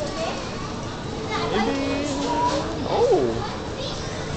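Indistinct chatter of passersby over a steady background of crowd noise, including high-pitched young voices. The loudest part is a short rising-and-falling call about three seconds in.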